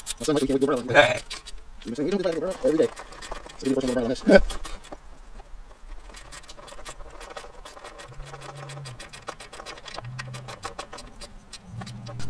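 A hand ratchet wrench clicking rapidly and steadily as bolts on the engine's top end are run in, after a few spoken words.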